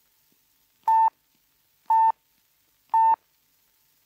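Three sharp pips of the Post Office telephone time signal, evenly spaced about a second apart, each a short steady beep. It is the warning given every three minutes on trunk and toll calls that going on will bring an extra charge.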